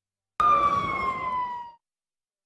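A single loud siren-like wail starts suddenly, slides slowly down in pitch for just over a second, then cuts off.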